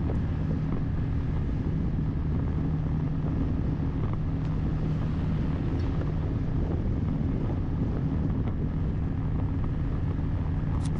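Motorcycle engine running at a steady cruising speed, a constant low hum under road and wind noise.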